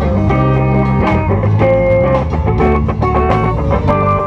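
Live band playing a gospel worship song on electric bass, electric guitar, drums and keyboard, with steady drum hits under sustained guitar and keyboard notes. It is recorded through the camera's own microphone, which the uploader says did not do the sound justice.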